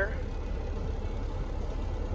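Semi truck's diesel engine idling, heard from inside the cab as a steady low rumble.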